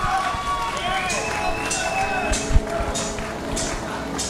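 Overlapping voices of spectators at a fight venue, several people talking and calling out at once, with a dull thump about two and a half seconds in.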